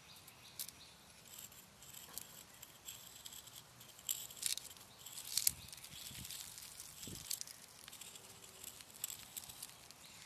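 Sidewalk chalk scratching on rough asphalt in short, irregular strokes, loudest about four to five and a half seconds in. A few soft low thumps follow.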